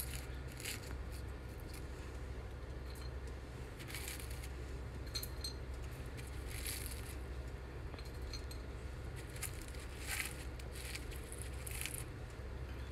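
Faint rustling and light clicks from hands pressing shredded kataifi pastry and pistachios into place in a metal baking tray, scattered every second or two over a steady low hum.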